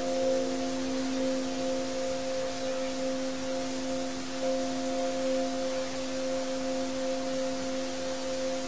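Ambient drone music: several steady, held tones sounding together over a constant hiss, with some of the higher tones dropping out and returning.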